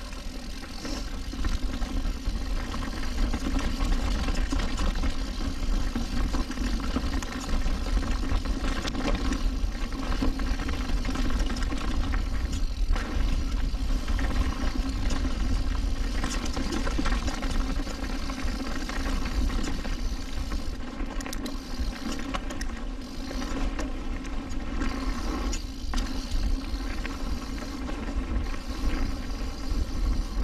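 Mountain bike rolling fast down a rough dirt trail: steady wind and tyre rumble on the rider's camera, with constant rattles and knocks from the bike over bumps. It grows louder over the first few seconds.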